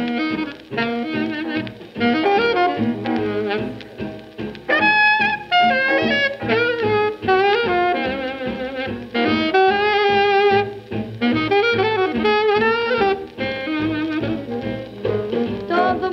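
1945 swing big band recording played from a 78 rpm V-Disc: the saxophone section and brass play an instrumental ensemble passage.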